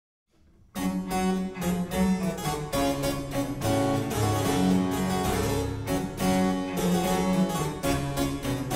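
Instrumental opening of a French baroque cantata, harpsichord prominent among the ensemble, starting a little under a second in after near silence.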